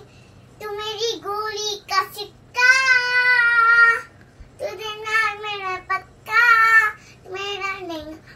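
A young girl singing a Hindi song unaccompanied, in short sung phrases with a long held note about three seconds in and another near seven seconds.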